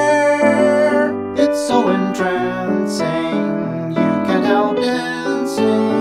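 Solo piano playing the accompaniment of a 1920s popular song in a steady dance rhythm, with no voice.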